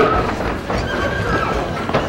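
Laughter and murmuring in a large hall, starting just as the music cuts off.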